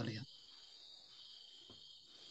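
A man's voice trails off just after the start. Then only a faint, steady, high-pitched chirring remains over near silence.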